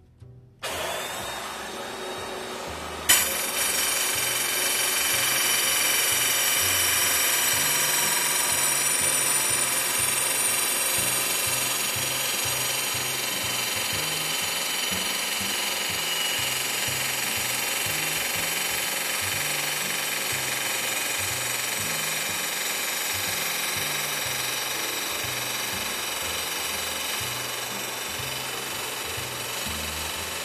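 Gemini Revolution XT tile saw starting up about half a second in, then its blade biting into a 24-inch porcelain tile about three seconds in with a sharp hit, followed by a steady grinding cut as the slide tray is pushed slowly through.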